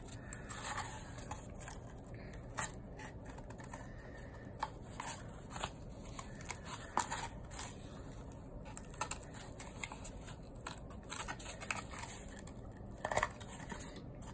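String being pulled through the notches of a cardboard loom and the cardboard handled: irregular light scratches, rustles and small clicks.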